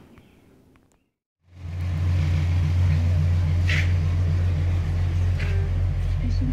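Faint room tone, then from about a second and a half in a Jeep's engine running, heard from inside the cabin as a loud, steady low drone. Two brief higher sounds come over it near the middle and near the end.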